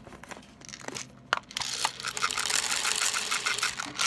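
A few plastic clicks as a pill stock bottle is handled and opened. Then, from about a second and a half in, a dense rattle of tablets pouring and sliding across a plastic pill-counting tray for about two seconds.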